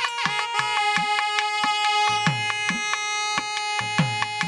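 Nadaswaram duet, South Indian double-reed wind instruments, playing a Carnatic melody over a steady drone: the melody bends at first, then holds one long note from about a second in. Regular thavil drum strokes keep the rhythm underneath.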